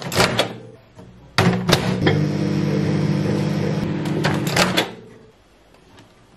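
Countertop microwave oven: clicks as its dial knob is turned and it is set going, then a steady electrical hum for a few seconds that stops about five seconds in, with a couple of clicks near the end of the hum.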